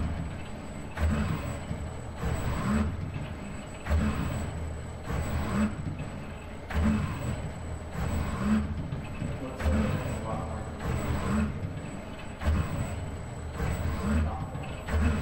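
ABB IRB120 industrial robot arm's joint motors running as the arm moves back and forth, in repeating surges about every second and a half.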